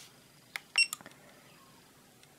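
A button click, then a short high beep from a FNIRSI LCR-P1 component tester as its test starts, followed by a softer click.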